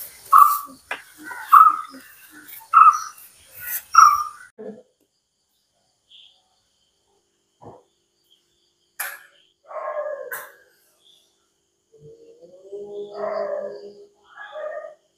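An animal calling in short, loud, evenly spaced calls, about one a second, through the first four seconds. Then mostly quiet, with a few sharp knocks, and a steady low tone beginning near the end.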